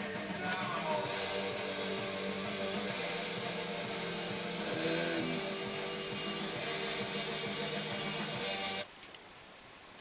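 Radio station jingle with guitar-led rock music, which cuts off suddenly near the end.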